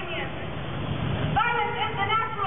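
A woman's raised voice speaks, breaks off briefly and resumes about a second and a half in, over a steady low rumble.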